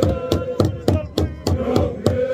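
Sharp percussive strikes at an even beat of about four a second, keeping time under a crowd's chant; the chant's held note thins out in the middle.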